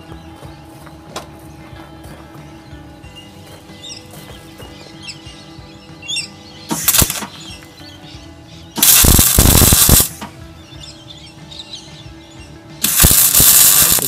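Electric arc welding on the steel ears of an excavator bucket: the arc crackles in three bursts, a short one about halfway through, then two of about a second each, the last running into the end. Soft music underneath.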